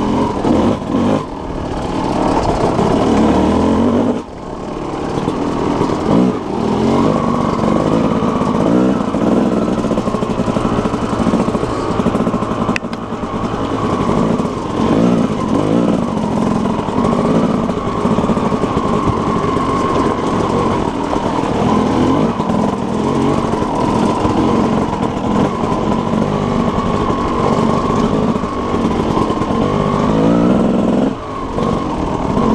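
Yamaha YZ250 two-stroke dirt bike engine running at low trail speed, the note rising and falling with the throttle. It eases off briefly about four seconds in, then picks back up.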